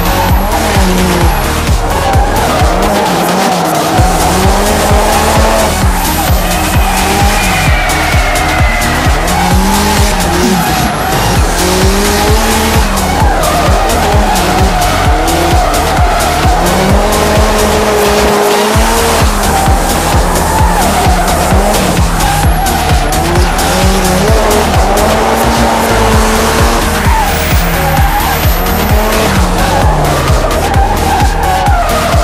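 Drift car engine revving up and down every few seconds, with tyre squeal from the car sliding through corners, under music with a steady beat.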